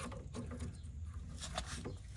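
Faint clicks and rubbing of plastic parts as a 3D printer hotend is pushed up into its toolhead by hand, with a few small taps near the end.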